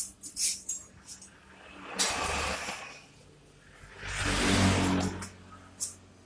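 Light metallic clicks as a stainless steel strap band and its buckle are handled around an aluminium pole, followed by two longer rasping scrapes, the second about a second long.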